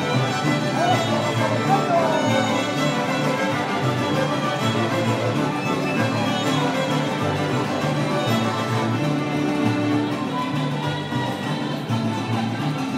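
A traditional mariachi ensemble playing live, violins leading over a stepping bass line.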